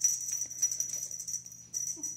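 Rapid, continuous metallic jingling of a small bell, with a steady high ring that is brightest just before it stops.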